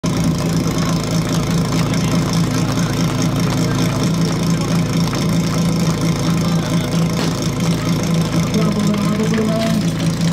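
Portable fire pump's engine idling steadily.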